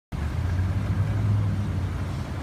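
Steady low rumble of street traffic, a motor vehicle's engine running close by.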